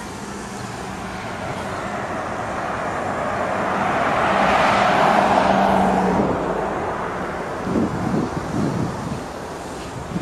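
A car passing by on the street, its tyre and engine noise swelling to a peak about halfway through and then fading away. A few short low bumps follow near the end.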